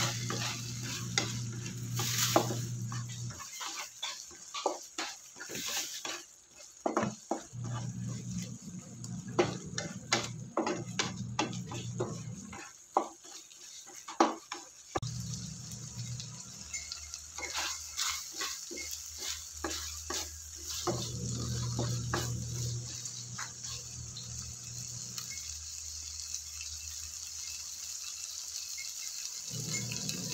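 Corned beef with diced potatoes and onions sizzling in a non-stick frying pan while a spatula stirs it, scraping and tapping against the pan many times in the first half and only now and then later. A low hum comes and goes underneath the sizzle.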